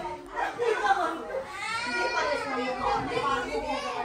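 Indistinct chatter: several people talking, their voices overlapping at times.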